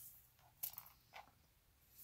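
Faint handling noise of small resin model parts on a cutting mat: a short rustle-and-click a little past half a second in and another soft click just after a second.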